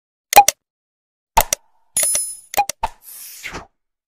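Subscribe-button animation sound effects: pairs of sharp mouse-click pops, a short bell-like ding about two seconds in, more clicks, then a whoosh falling in pitch near the end.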